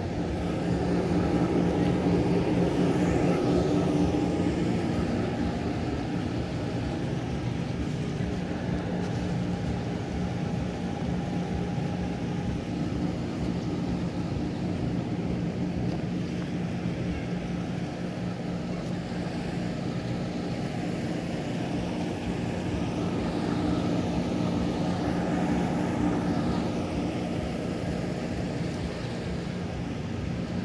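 Steady low mechanical hum with a few held tones, growing a little louder a couple of seconds in and again near the end.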